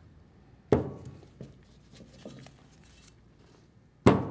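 Metal parts of a treater valve being handled during disassembly: one sharp knock with a short ring about three quarters of a second in, then a few faint clicks.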